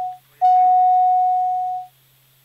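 A phone ringing with a steady, single-pitched electronic tone in long beeps: the first ends just after the start, and after a short gap a second beep lasts about a second and a half.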